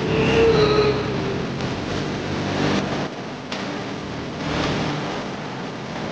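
A steady rumbling noise, with a short voice-like sound in the first second.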